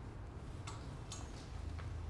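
Three faint clicks of clothes hangers knocking on a garment rail as a hanging outfit is taken off the rack, over a low steady hum.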